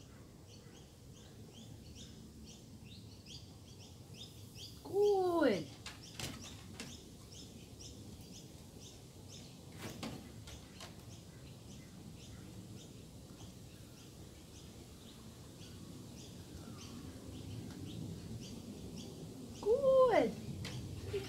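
Birds chirping in the background, short high chirps repeating about three a second. A short voiced sound falling in pitch comes about five seconds in, and a similar one at the very end.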